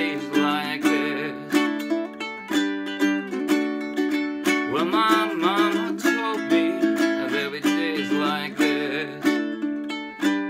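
Ukulele strummed in a steady rhythm of strong chord strokes, with a man singing along over it.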